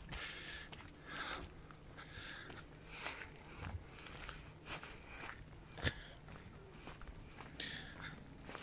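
Faint footsteps of a person walking on a tarmac path, a soft scuff a little under twice a second, with one sharper click about six seconds in.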